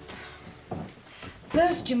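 Quiet room tone with a soft knock, then a woman's voice begins speaking near the end.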